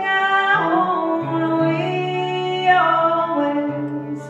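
A woman singing long held notes while strumming an acoustic guitar, performed live.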